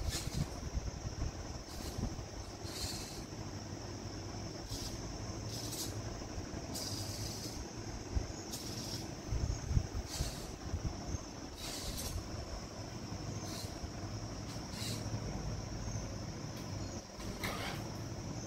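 Hobby servo motors of a robotic arm whirring in short high-pitched bursts, one every second or two, as the arm is moved joint by joint. Under them runs a steady high whine and a low hum.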